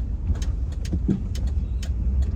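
Low, steady rumble of a car driving through a turn, heard from inside the cabin, with light ticks about twice a second.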